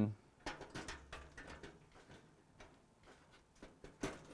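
A hard drive sliding into a PC case's toolless drive bay: a run of small clicks and scrapes as it goes in, most of them in the first couple of seconds, with one more near the end.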